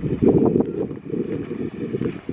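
Wind blowing across a phone's microphone: a low rumble that surges and eases in gusts.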